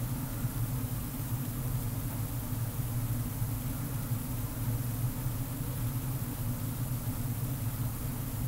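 A steady low hum with a light hiss above it, unchanging throughout: room background noise with no speech.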